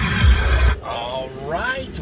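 Music with a heavy bass beat playing over the car stereo, cut off abruptly under a second in; then a person's voice makes one drawn-out sound that slides in pitch.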